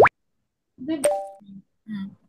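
A short electronic sound effect: a quick rising 'bloop' at the start. About a second later comes a click with a brief two-tone ding, the kind of sound a presentation slide plays as new text appears.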